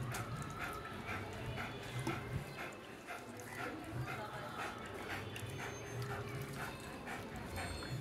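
German shepherd dog whining and yipping in a long run of short, high cries, a few each second.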